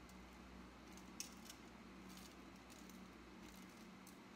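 Near silence: faint steady room hum, with a few soft scrapes and taps as a utensil spreads a brown sugar mixture over raw bacon slices.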